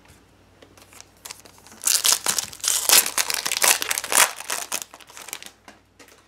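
A foil baseball-card pack being torn open by hand: a dense crinkling that starts about two seconds in and lasts about two seconds, followed by lighter rustling and clicks as the cards are slid out.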